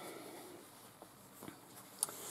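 Faint rustle of towelling fabric being handled and laid together by hand, with two soft ticks about a second in and half a second later.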